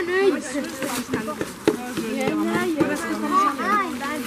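Children's voices chattering and calling out over one another, with a few short clicks.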